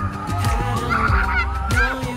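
Background music with a steady beat, and a short run of high sliding notes in the middle.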